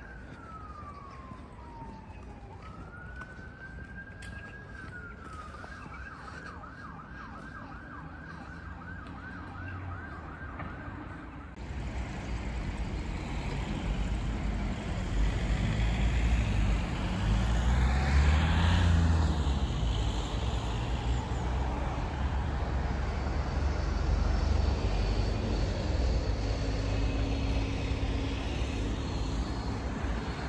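Emergency-vehicle siren: a slow wail falling and rising in pitch, then switching to a fast yelp of several rises a second. About eleven seconds in it cuts off suddenly, and street traffic follows, with a car passing close about eighteen seconds in.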